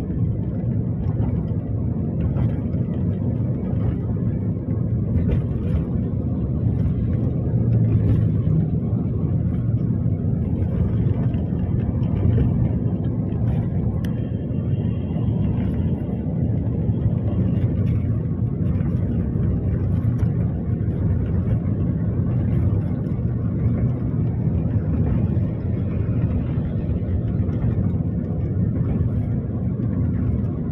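Steady road noise inside a car's cabin at highway speed: a low rumble of tyres and engine.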